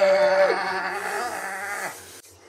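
Men yelling a long, drawn-out "whoa" in excitement, two voices each held on one steady pitch. The higher voice breaks off about half a second in, and the lower one fades out near the end.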